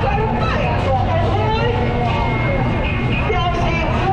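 Crowd hubbub: many voices talking at once over a steady low rumble.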